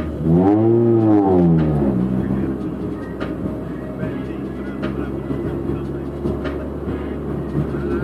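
Honda B18C4 VTEC 1.8-litre four-cylinder engine heard from inside the Civic's cabin: the revs climb and fall back once in the first two seconds, then the engine runs at a steady low note as the car rolls along.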